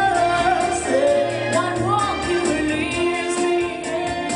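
A woman singing a pop song into a handheld microphone over backing music with a steady beat.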